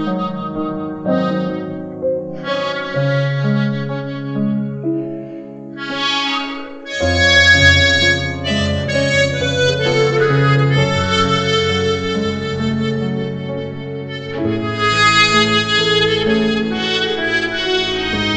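Harmonica playing a melody in phrases over a piano backing track. About seven seconds in, the accompaniment fills out with a strong bass underneath.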